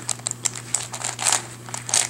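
WitEden 3x3 Mixup Plus puzzle cube being turned by hand: a quick, irregular run of plastic clicks and rattles as the layers are twisted.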